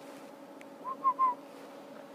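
Three quick, high whistle-like chirps in a row about a second in, over a steady faint hum.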